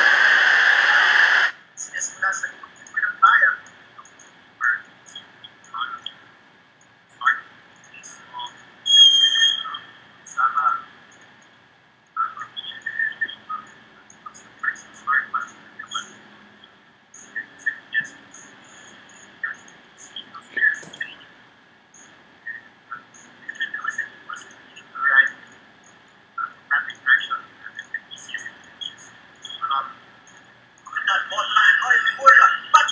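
Loud, steady stadium crowd noise cuts off abruptly about a second and a half in. What follows is sparse match-side sound: scattered short, thin-sounding shouts and calls from voices at a football match, with gaps between them.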